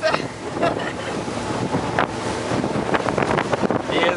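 Wind buffeting the microphone and water rushing past a speeding boat: a steady rushing noise with a few brief knocks.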